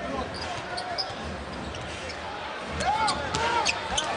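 Basketball game sounds on a hardwood court: a ball bouncing and sneakers squeaking, over a steady arena crowd murmur. The squeaks and sharp ticks come thicker in the last second or so as the play moves toward the basket.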